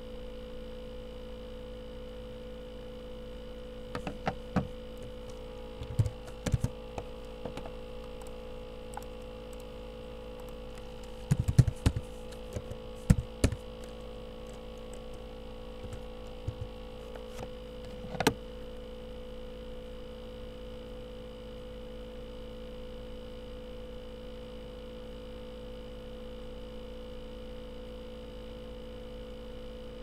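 Steady electrical hum with several fixed tones, broken by short clusters of sharp clicks from computer keys and a mouse as an equation is typed. The clicks come in bursts a few seconds apart and are loudest about eleven seconds in.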